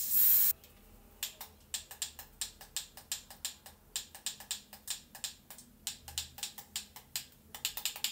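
A short burst of aerosol spray hissing, cutting off about half a second in, followed by a run of light, sharp clicks at about four a second.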